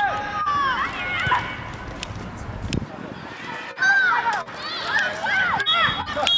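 Voices shouting and calling out across a youth football pitch during play, with a few sharp knocks.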